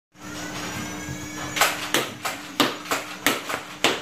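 Battery-powered Nerf Flyte CS-10 flywheel blaster spinning up with a rising whine over a steady motor hum. About one and a half seconds in it starts firing darts in quick succession, about three shots a second, eight in all.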